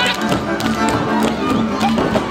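Hungarian folk dance music from a string band, with dancers' boots stamping and clicking sharply on the wooden stage in time with it.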